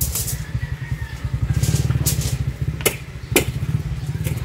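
An engine idling with a fast, steady low pulse, with several sharp knocks from concrete hollow blocks being handled and set down.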